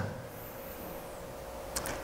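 Quiet room tone in a pause in speech, with a faint steady hum and a brief click near the end.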